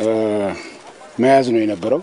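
A man speaking. He draws out one long, steady vowel at the start, then says a few words near the end.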